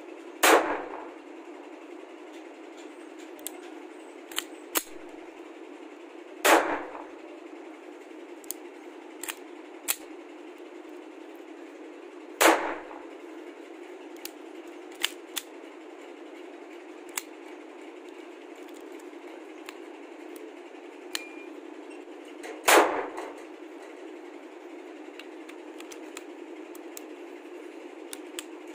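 A pistol firing film-shooting blank cartridges: four single shots several seconds apart, each with a short echo. Between the shots come small metallic clicks as the slide is worked by hand, since the blanks are not working the action well.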